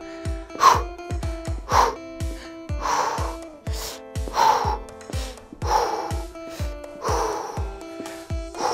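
Upbeat workout music with a steady beat, over which a woman exhales sharply and audibly about every second and a half as she does a resistance-band leg exercise.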